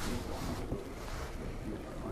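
Camera handling noise: a steady low rumble as the handheld camera's microphone is rubbed and jostled while it is moved.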